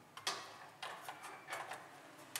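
Three light, sharp clicks and knocks about half a second to a second apart, each followed by a short rustle, from hand work with a tool at a small wall-mounted breaker box.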